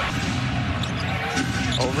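Game sound from an indoor basketball arena: a steady crowd hubbub with a basketball being dribbled on the hardwood court and sneakers squeaking, the squeaks coming thickest about a second and a half in.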